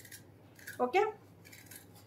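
Sheer organza fabric rustling in short, crisp bursts as it is handled and smoothed, with a single spoken "okay" about a second in.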